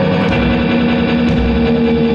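Amplified guitar playing an instrumental passage live: sustained, ringing notes with a new note or chord struck about once a second.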